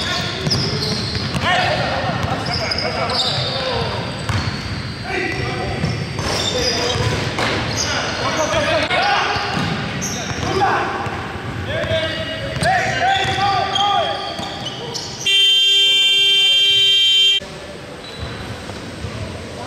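Indoor basketball game: players' voices and a basketball bouncing echo in a large gym. About fifteen seconds in, the scoreboard buzzer sounds one steady, harsh tone for about two seconds, marking the game clock running out at the end of the period.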